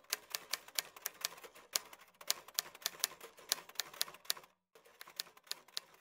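Typewriter keys clacking in a quick, uneven run of keystrokes, several a second, with a short break about four and a half seconds in before the typing resumes more softly.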